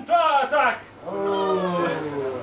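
Wordless human vocal cries: quick, swooping yowls in the first second, then, after a short break, one long held cry that sinks slowly in pitch.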